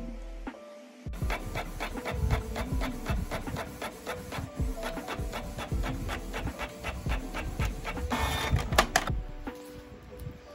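Canon inkjet printer printing a page. It starts about a second in with rapid, steady ticking, and there is a louder burst of whirring about eight seconds in.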